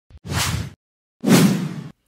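Two whoosh sound effects from a TV news intro sting, each under a second long with silence between them; the second starts suddenly and is the louder.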